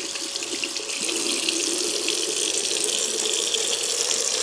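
Kitchen faucet running steadily, its stream splashing over a raw chicken piece being rinsed under it. The water sound grows a little fuller about a second in.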